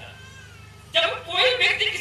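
A man's voice, loud and high-pitched, sets in suddenly about a second in and continues with wavering, drawn-out sounds; a faint wavering tone is heard before it.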